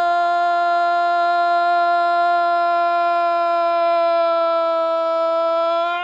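Sports commentator's drawn-out goal cry, "Gol" held loud as one long unbroken note, sagging slightly in pitch and falling away at the very end.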